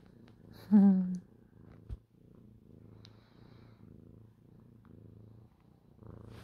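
Domestic cat purring steadily, the low purr rising and falling with each breath.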